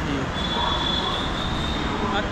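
Metro train wheels squealing on the rails: one high, steady squeal starting about half a second in and lasting just over a second, over a low, constant rumble.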